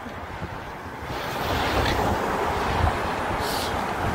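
Wind rushing over a phone's microphone outdoors, mixed with street noise, swelling about a second in and then holding steady.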